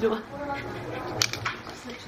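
Quiet talk in a small room after a voice breaks off, with a couple of brief clicks about a second in.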